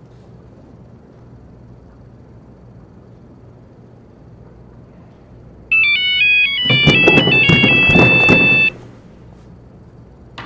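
A phone ringtone starting a little past halfway: a quick melody of high electronic beeping notes, joined after about a second by a fuller tune with bass and a beat, cut off abruptly after about three seconds. Before it, only a low steady hum.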